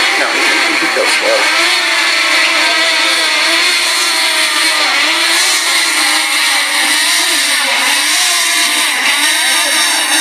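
Propellers of a small DJI quadcopter drone whining close by as it descends to land, the pitch of the whine wavering up and down as the motors adjust.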